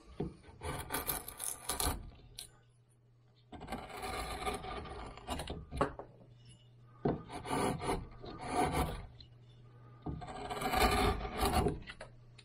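Hand carving tool scraping and cutting into cottonwood bark in four long strokes of one to two seconds each. A faint steady low hum runs underneath.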